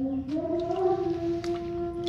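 A woman's voice humming one long steady note, rising slightly in pitch at the start and then held.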